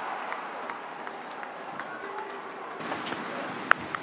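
Steady murmur of a stadium crowd, then about three-quarters of the way through a single sharp crack of a cricket bat striking the ball cleanly for a shot sent over the boundary rope.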